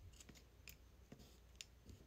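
Near silence with about half a dozen faint, light clicks, irregularly spaced: eating utensils tapping against a plastic bento box during a meal.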